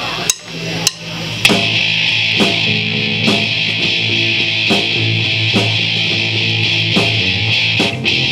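Sharp drumstick clicks counting in, then a rock band of distorted electric guitar, bass guitar and drums starts playing about a second and a half in, with regular drum beats under a sustained guitar sound.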